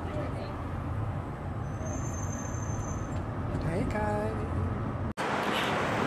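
Steady low rumble of engine and road noise inside a moving car's cabin, with a faint high whine partway through. It cuts off suddenly about five seconds in.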